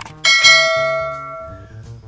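A click followed by a single bright bell chime that rings out and fades over about a second and a half: the notification-bell ding of a subscribe-button animation.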